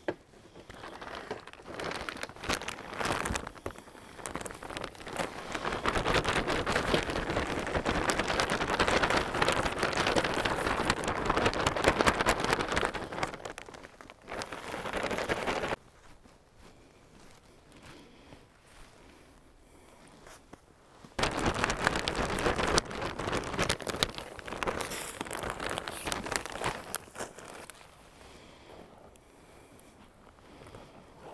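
Plastic potting-soil bag crinkling and rustling as gloved hands scoop and pour soil into a stone container, with soil pattering and scraping. The rustling cuts off suddenly about 16 seconds in and starts again about 21 seconds in.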